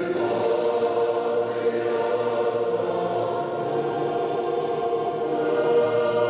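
A choir singing a national anthem in long, held chords, loud and steady throughout.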